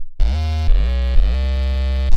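Electronic dance music: a heavy, buzzing synth bass holding notes and sliding up and down between them, after a brief break at the very start, with sharp hits about every half second.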